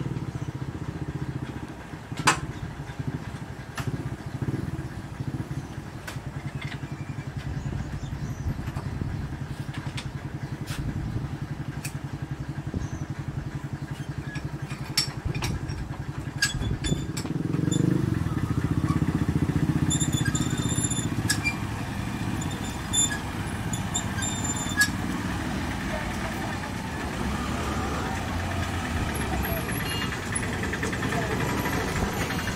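Motorcycle and auto-rickshaw engines idling in a steady low rumble at a closed railway level crossing. Scattered sharp metallic clicks and clanks come from the hand-cranked gate winch being worked.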